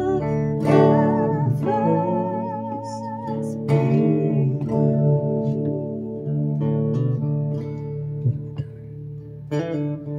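Hollow-body electric guitar played through a small amplifier: a slow melody of sustained, wavering notes over ringing low chords, with new chords struck several times.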